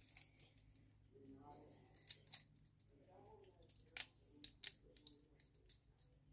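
Faint, scattered clicks and taps of plastic Lego pieces being handled and refitted, against near silence.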